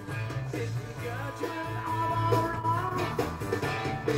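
Rock music with guitar and vocals playing over hi-fi loudspeakers. It is most likely the playback being read off the tape of a three-head reel-to-reel deck while it records from a vinyl record.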